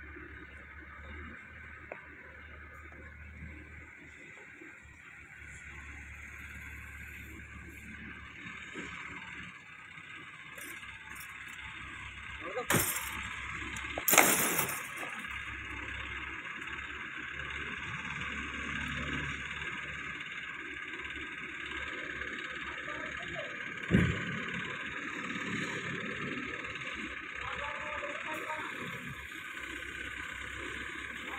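Hydra pick-and-carry crane's diesel engine running steadily while it carries a suspended vibrating screen, with two sharp clanks about halfway through.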